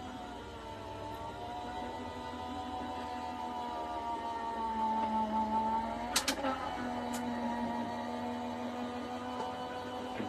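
Electric die-cutting machine running as it feeds a die, shim and plates through, its motor humming steadily. There is a short click about six seconds in.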